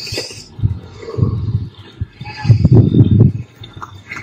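Wind buffeting the phone's microphone: irregular low rumbling gusts, loudest about two and a half to three seconds in.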